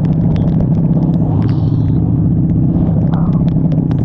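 Honda Shadow Aero 750 V-twin running steadily at road speed in the rain, under wind noise, with frequent sharp ticks from raindrops hitting the camera.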